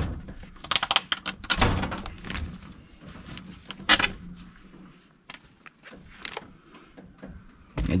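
Rusted, crumbling cylinder head gasket being peeled off a cast-iron engine block by gloved hands: irregular scraping, rustling and clinking of thin metal on metal, with a sharp knock about four seconds in.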